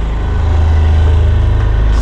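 Diesel generator on a motorhome running steadily under the load of the coach's air conditioning, a loud, even low drone.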